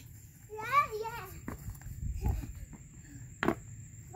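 A young child's short, high-pitched voiced call rising in pitch, about half a second in, during outdoor play. After it comes a quieter stretch with a low rumble and a few light knocks.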